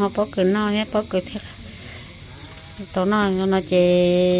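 Steady high-pitched insect chorus that runs without a break, with a person talking over it in the first second and a half and again near the end.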